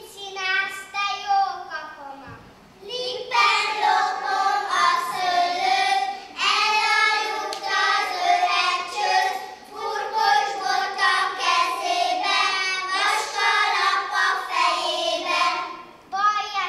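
A group of young kindergarten children singing together in high voices, with long held notes; the singing grows fuller and louder about three seconds in.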